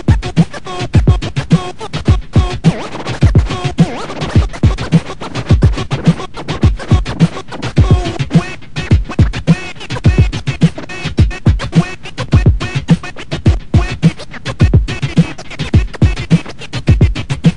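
DJ scratching a record on a portable turntable, with fast back-and-forth pitch sweeps chopped into short cuts by the mixer's fader, played through M-Audio Torq DJ software.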